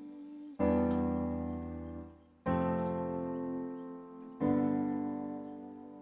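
MIDI keyboard playing an acoustic grand piano sound: three full chords struck about two seconds apart, each left to ring and fade before the next.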